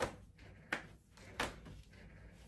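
Three soft knocks about two-thirds of a second apart: footsteps on a hard floor.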